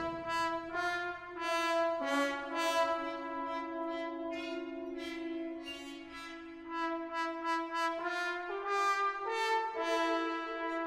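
Brass band playing a soft passage of long held chords, the harmony shifting every second or two as new notes come in over a sustained low line.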